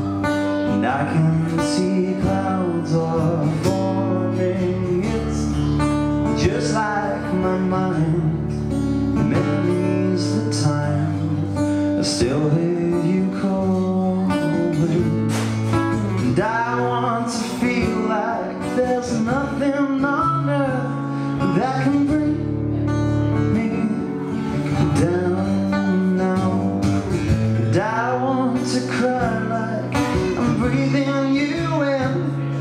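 Live band music: strummed acoustic guitar with a second guitar, electric bass and drums with cymbal hits, and a male lead voice singing in phrases over it.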